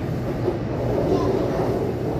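Interior running noise of a Taipei Metro C301 car with refitted propulsion equipment: a steady rumble of the train running along the track.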